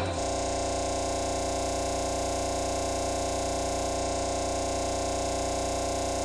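A steady electronic tone with many overtones, unchanging in pitch and loudness, starting just as the talk stops.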